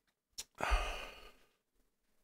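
A man's breathy exhale into a close microphone, a sigh that fades out in under a second, with a short click just before it.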